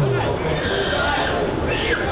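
Spectators' voices in a football stadium, with a brief high cry near the end.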